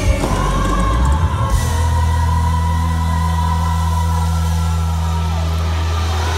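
Live gospel music with singing and a choir: a long note held for the first couple of seconds over a steady, deep sustained bass chord.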